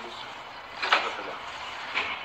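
City street background noise, a steady rush of traffic, with one short sharp sound about a second in.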